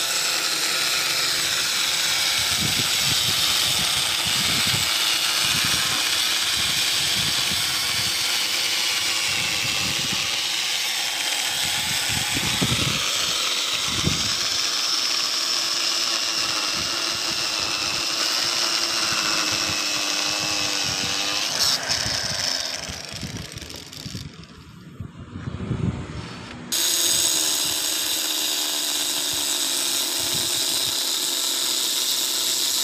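Handheld electric stone cutter running and cutting into a stone slab, a steady high whine. About three quarters of the way through it dies down for a few seconds, then comes back suddenly at full level.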